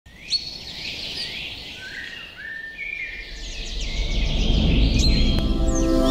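Birds chirping: a run of short whistled chirps and gliding calls, with a low rumble and a held music chord swelling in over the second half.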